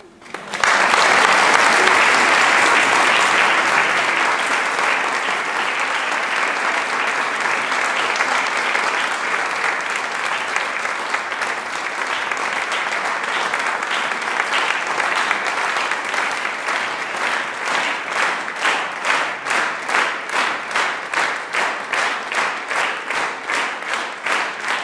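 Concert audience applauding, breaking out about half a second in after a moment of silence. In the last third the applause turns into rhythmic clapping in unison, about two claps a second.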